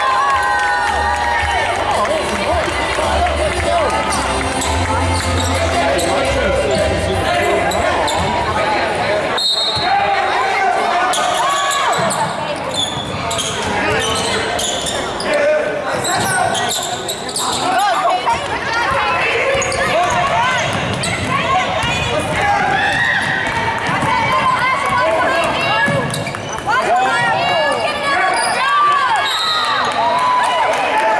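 Basketball game on a gym's hardwood court: a ball dribbling and bouncing on the floor, mixed with players and spectators calling out, in an echoing hall.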